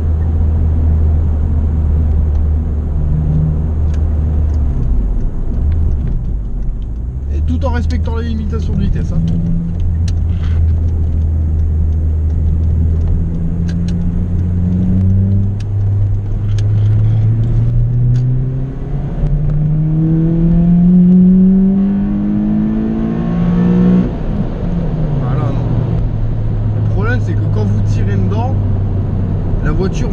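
Honda Civic Type R EP3's four-cylinder engine with an HKS exhaust, heard from inside the cabin. It hums steadily at cruise with a brief dip in revs early on. About halfway through the revs climb steadily for around ten seconds, then drop back to a steady cruise.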